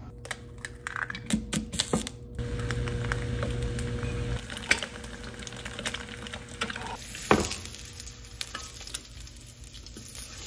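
Food frying in a pan on the stove, a steady sizzle, with sharp clicks of a toaster's lever and buttons in the first two seconds and scattered clacks of a utensil against the pan.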